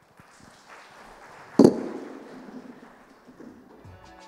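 A single sharp, loud thump about one and a half seconds in, fading over a second, with faint rustling around it.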